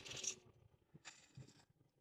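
Near silence, with a faint brief hiss about a second in.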